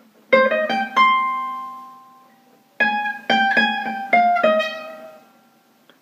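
Gypsy jazz acoustic guitar (Selmer-style, small oval soundhole) playing single notes: a quick rising C minor arpeggio up to high C that rings on. About three seconds in comes a faster descending run of about six notes, which also rings out.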